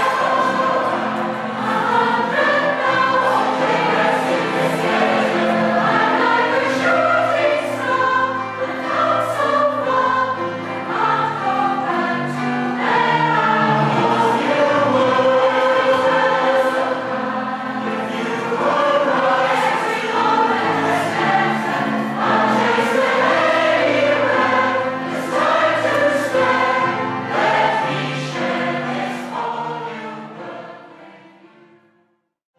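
A large mixed community choir of women's and men's voices singing a song together, fading out near the end.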